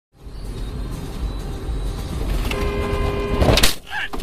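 A Chevrolet Cobalt's cabin road and engine noise while driving, with a steady multi-tone sound starting about two-thirds of the way through. Near the end comes a loud, sudden crash as the car hits an elk, followed by the car slowing hard.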